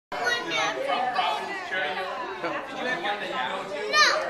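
Several people talking at once: steady overlapping chatter in a room.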